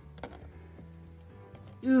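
Faint crunching clicks of a black-breasted leaf turtle chewing a live isopod, over quiet background music.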